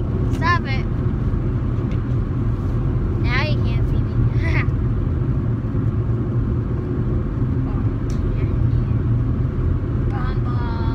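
Steady road and engine rumble inside the cabin of a moving car. A child's high voice sounds briefly near the start and again about three to four seconds in.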